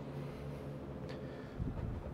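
Faint outdoor background: a steady low hum, with a brief low rumble of wind on the microphone about one and a half seconds in.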